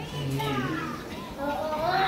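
Untranscribed voices talking, with a high-pitched voice calling out in the second half, loudest near the end.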